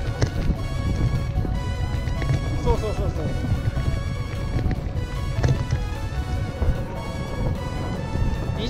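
Background music with steady held tones, over a constant low wind rumble on the camera microphone during the ride.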